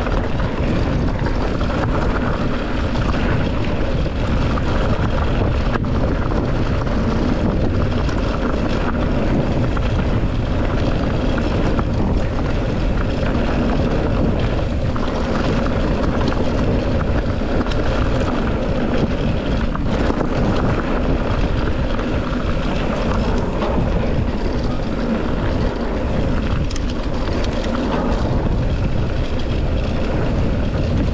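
Mountain bike descending a dirt trail at speed: steady wind rush on the microphone over the rolling of tyres on dirt, with a constant patter of small knocks and rattles from the bike over bumps.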